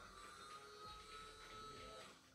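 Ajax smart Wi-Fi blind motor running, winding the bead chain to turn vertical blinds closed, with a faint steady high whine.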